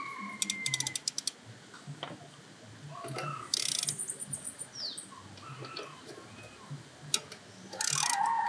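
Hand ratchet wrench clicking as a bracket bolt is loosened, with a quick run of clicks under a second in and scattered single clicks after. A short burst of noise comes about three and a half seconds in.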